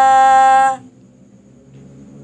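A woman's voice chanting Qur'anic recitation, holding one long steady note that ends just under a second in, followed by a quiet pause.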